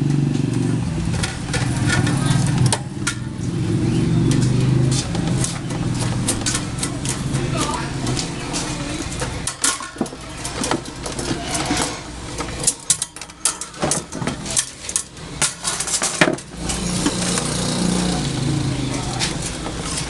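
Metal clicks and rattles of a stand fan's wire guard and its rim clips being pried open with a screwdriver, coming thickest in the middle of the stretch. Under them a low steady drone runs in the background, dropping away in the middle and returning near the end.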